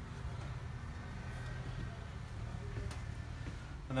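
Low steady background hum, with a faint click about three seconds in.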